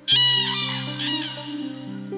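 Two loud crane calls, about a second apart, over gentle background music with sustained notes.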